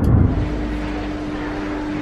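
Low road rumble inside a moving car's cabin, cut off sharply less than half a second in, giving way to a steady low hum.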